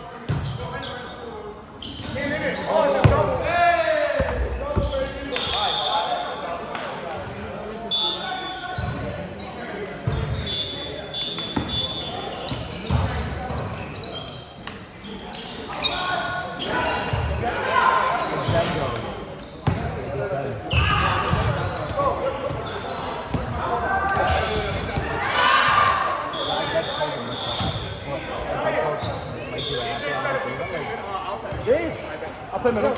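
Indoor volleyball play: players' voices calling out in a reverberant gym, with the ball hitting hands and floor at intervals.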